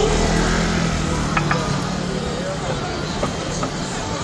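Busy street noise: voices of passers-by over a steady engine hum from a vehicle, with a few short clicks about a second and a half in.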